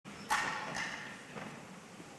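Two sharp knocks about half a second apart, then a fainter third, each ringing on briefly in the echo of a large church.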